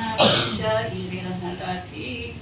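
One loud cough about a quarter second in, amid a woman's chanted recitation of Arabic prayers, which carries on after it.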